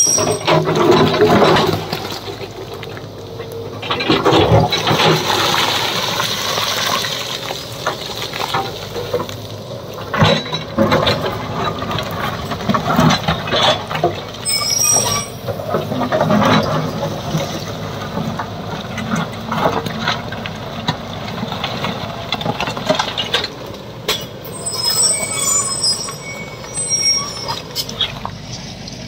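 JCB tracked excavator's diesel engine running under load as its steel bucket scrapes and prises into a slope of layered rock, with stones and rubble clattering and sliding down in repeated bursts.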